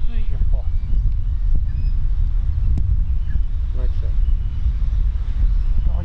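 Steady low wind rumble buffeting the microphone, with faint, indistinct voices in the background and a single brief click about three seconds in.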